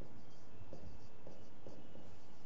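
A stylus writing by hand on an interactive display screen: a few faint, short scratching strokes.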